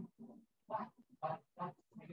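A person's voice making about four short, separate vocal sounds, each a fraction of a second long.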